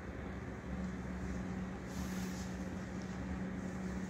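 A steady low mechanical hum, with faint rustling about halfway through.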